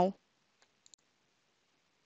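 A few faint computer mouse clicks, about half a second and a second in, against near silence.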